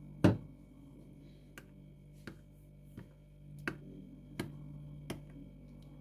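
Plastic spoon knocking against a ceramic bowl while stirring a thick sour-cream marinade: a sharp click just after the start, then short clicks about every 0.7 s, over a low steady hum.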